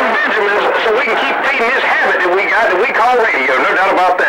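A man's voice over a CB radio receiver: thin, band-limited radio speech that is not clearly intelligible.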